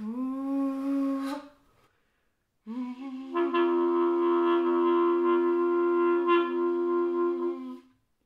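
A clarinet played while the player sings into it, a Klezmer technique. A short held sung tone comes first; after a brief pause the voice starts again and the clarinet note joins about a second later. Voice and reed then hold two different pitches together for about five seconds before stopping.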